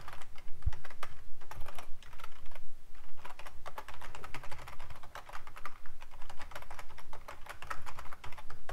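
Computer keyboard typing: a fast, uneven run of keystrokes.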